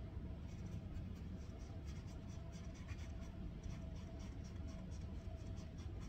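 Paintbrush dabbing and stroking on a stretched canvas: a run of short, scratchy strokes, several a second, starting about half a second in, over a steady low room hum.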